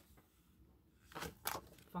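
Paper page of a spiral-bound desk calendar being flipped over: a brief rustle of a few quick strokes a little past a second in, after a quiet moment.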